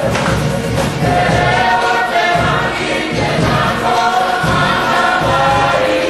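A group of young people singing a song together in chorus, the voices holding and sliding between notes.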